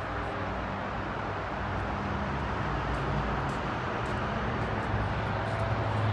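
Steady low engine hum from an idling vehicle, over a constant wash of outdoor traffic noise.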